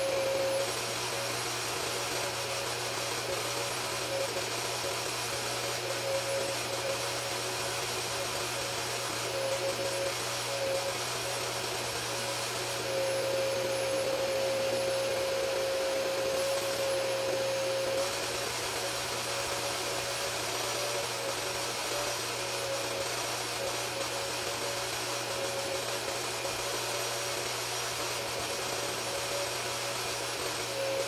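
Hoover Power Dash Pet Go portable carpet cleaner running steadily, its hand tool working through the wool pile of a sheepskin rug. The motor's steady whine grows stronger for a few seconds about halfway through.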